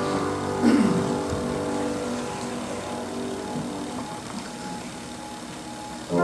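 The last chord of a congregational hymn dying away in the sanctuary, with a brief falling sound about a second in, then a hush with faint lingering tones.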